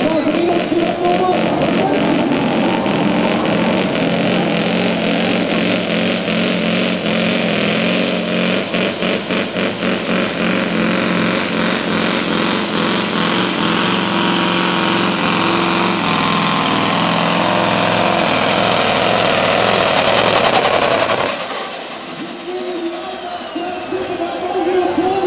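Iveco V8 truck-pulling engine running hard under the load of a weight sled, with a high whine that climbs in pitch through the first half of the run. About 21 seconds in the engine drops off suddenly as the pull ends, and the whine falls away.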